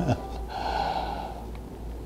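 A man's laugh trailing off with a falling voice, followed by a breathy exhale about half a second in.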